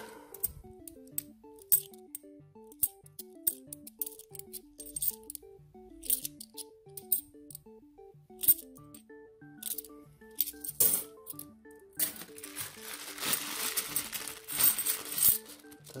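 Background music with a stepping melody over sharp clinks of 50p coins being picked up, set down and stacked. In the last few seconds a plastic bag of coins rustles and rattles.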